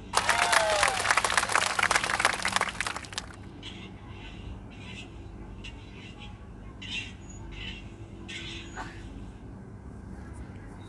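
A loud crackling rustle for about three seconds, then a run of short, soft scratchy strokes, one every half second to a second: an eyebrow brush being stroked through the brow close to the microphone.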